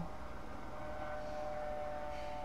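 A male voice's last sung note cuts off at the very start, leaving steady microphone hiss and low hum. From about half a second in, a faint steady high whine of two tones joins it.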